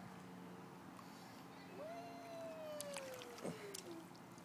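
A single drawn-out, voice-like call that starts about halfway in and falls slowly in pitch over about two seconds, with a few soft clicks near its end.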